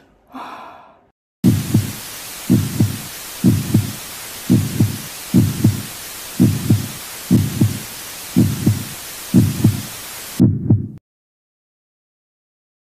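Heartbeat sound effect: paired lub-dub thumps about once a second over a steady hiss, about ten beats, cutting off suddenly near the end. Before it, a brief sigh.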